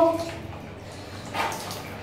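Water sloshing faintly in a plastic washbasin that a toddler is standing in, with one short, louder splash about a second and a half in.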